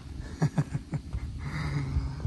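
A man's voice without words: a few short breathy chuckles, then a brief low hum.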